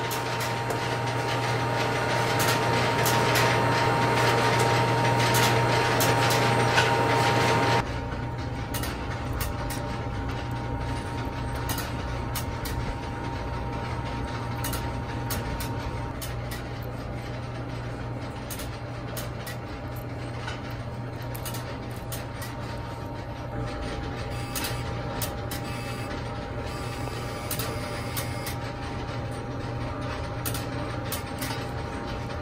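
Steady hum of a telephone switching equipment room. It changes abruptly about eight seconds in to a lower hum with many scattered small clicks.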